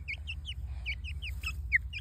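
Young chickens peeping: a quick run of short, high chirps, several a second, over a low steady rumble.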